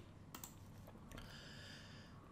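Near silence: room tone with a faint computer click about a third of a second in.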